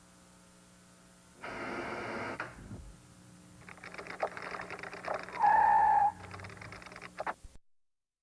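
Off-air television audio on an old videotape recording: a faint hum, a brief burst of noise, then a run of crackling clicks with a short steady beep about five and a half seconds in. The sound cuts off abruptly just before the end as the recording stops.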